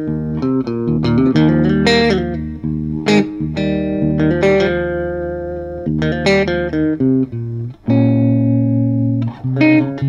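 Home-built electric baritone guitar played with both pickups selected: chords struck about once a second, each left ringing, with a brief break just before eight seconds in.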